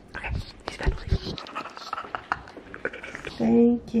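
Knocks and rustling of a phone being handled close to its microphone for about three seconds, then a woman calls out near the end.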